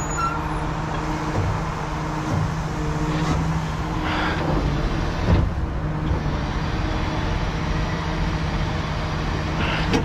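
Heavy recovery truck's diesel engine running steadily, with a short knock about five seconds in.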